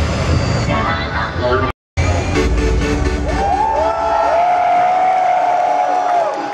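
Live arena concert music over the PA, loud and bass-heavy, cutting out for a moment about two seconds in. After the gap, high tones glide up and are held while the bass falls away.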